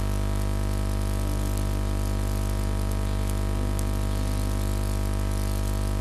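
Steady low electrical hum from the sound system, with faint musical notes playing softly beneath it.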